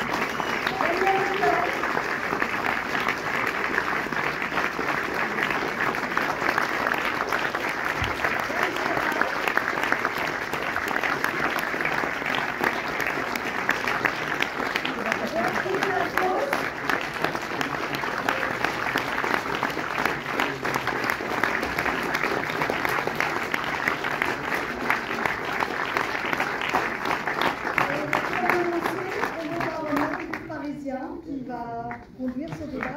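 Audience applauding steadily: dense, unbroken clapping from a full hall.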